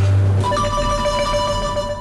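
Marimba and youth symphony orchestra playing: a low note at the start, then a chord held steadily from about half a second in.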